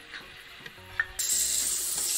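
Onion, ginger and garlic masala frying in oil in a kadhai while a metal spatula stirs it. About a second in, the spatula clicks sharply against the pan, and just after that the sizzling comes in suddenly much louder and stays.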